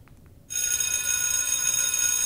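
An electric bell starts ringing suddenly about half a second in and rings on steadily, a bright metallic ring that marks the end of the test time.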